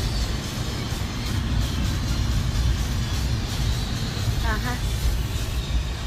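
Steady low road and engine rumble inside a moving vehicle's cabin, with music playing in the background and a brief voice about four and a half seconds in.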